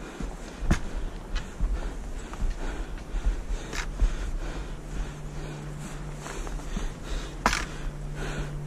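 Footsteps on a rocky dirt trail with camera-handling rumble and a few sharp knocks. A low steady hum comes in about halfway through.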